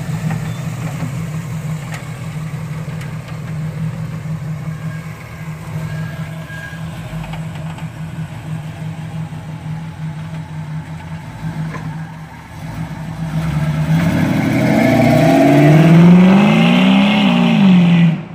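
1969 Chevrolet Camaro SS V8 idling steadily, then revving up as the car accelerates away about three-quarters of the way in. The engine pitch climbs, peaks and falls back near the end.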